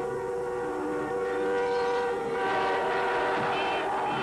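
Several car horns blaring at once, held long and steady, in jammed street traffic.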